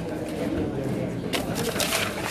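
Indistinct murmur of people talking close by, with paper rustling as printed sheets are handled, sharpest a little over halfway through.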